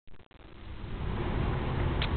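Outdoor rain ambience with a low rumbling noise on the camcorder microphone, building up over the first second after a couple of clicks at the very start.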